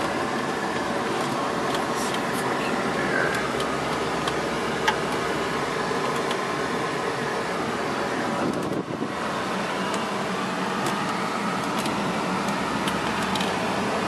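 Steady engine, tyre and wind noise inside a classic car's cabin while it drives, with a few light clicks and a brief drop in level about nine seconds in.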